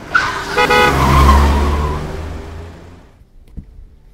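A vehicle passing close by: it swells up, gives a quick burst of horn honks about half a second in, runs with a deep rumble, then fades away over the next two seconds.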